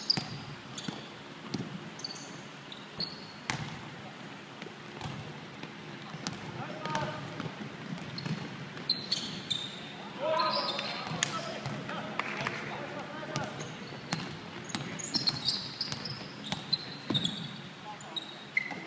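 Basketball bouncing on a wooden gym floor, with sneakers squeaking and players' voices echoing in the hall, most clearly shouting about ten seconds in.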